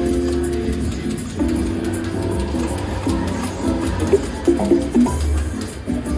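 Goldfish Feeding Time video slot machine's game music: a melody of short pitched notes playing as the reels spin and stop, with a quicker run of notes in the second half.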